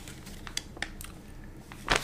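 A paper instruction sheet handled and unfolded, giving a few short crinkles and crackles, the loudest near the end.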